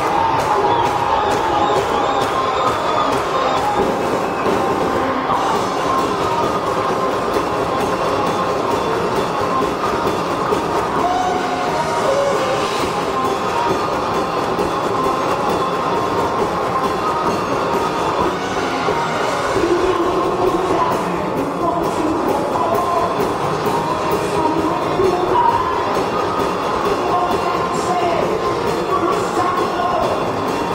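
Live hard rock band playing at full volume: distorted electric guitar, bass and drums in one steady, dense wash of sound, heard from the audience in the hall.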